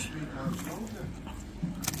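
Faint background voices and room noise during a lull in talk, with one sharp click near the end.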